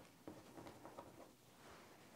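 Near silence, with a few faint light ticks in the first second or so from a rotary cutter and acrylic ruler trimming the edge of a quilt block on a cutting mat.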